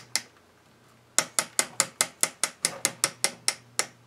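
Home laminator with a stripped drive gear, its mechanism clicking in a fast even rhythm, about five clicks a second. The clicking stops briefly near the start, then resumes for about two and a half seconds.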